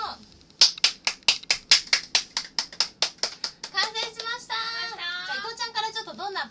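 Two people clapping hands, a quick even run of about five claps a second for some three seconds, then fading into a few scattered claps under high, excited voices.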